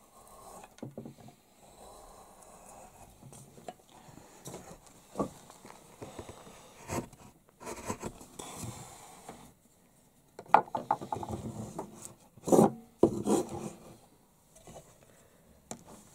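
Hand woodcarving chisel paring into a wooden workpiece: a run of irregular scraping cuts lifting curled shavings, with a louder cluster of sharp cuts and knocks a little past the middle.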